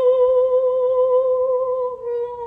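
A woman singing unaccompanied into a handheld microphone, holding one long note with a slight vibrato.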